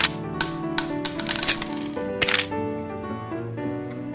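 A rifle-style reload: a quick series of sharp metallic clicks and clacks, then a short rasping slide about two and a half seconds in, over background music.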